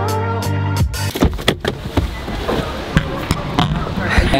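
Background music with a steady beat, which gives way about a second in to a few sharp clicks and a steady rush of noise as the car's interior door handle is pulled and the door unlatches and opens.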